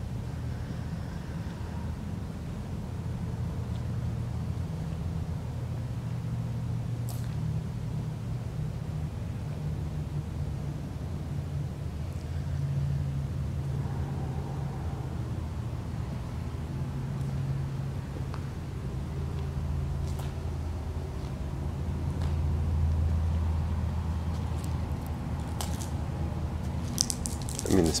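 Low, steady rumble of distant road traffic carried into a large empty building, swelling slightly as vehicles pass, with a single faint click about seven seconds in.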